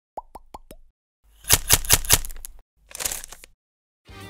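Intro sound effects: four quick rising pops about a fifth of a second apart, then four sharp hits at the same pace, then a brief hissing swish.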